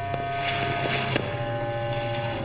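Dark, tense drama score: a low sustained drone under long held string tones, the pitch shifting once about a second in. A brief rustle of clothing is heard about half a second in.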